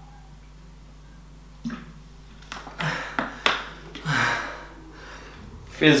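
A man drinking from a plastic shaker bottle, then breathing out hard and sighing after the drink, with a couple of sharp clicks among the breaths. The first second and a half is only quiet room tone.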